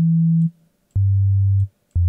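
Nexus 3 'Basic Sine' bass preset, plain sine-wave notes played one at a time: a higher note, then two lower notes of the same pitch about a second apart, each lasting about half a second.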